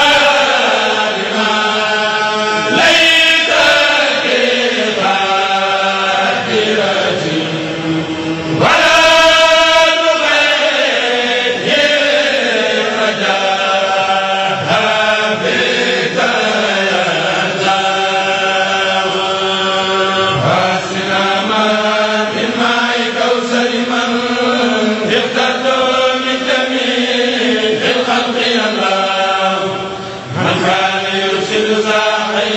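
A group of men chanting a Mouride khassida in the Senegalese sindidi style, with long held notes that slide from one pitch to the next without a break.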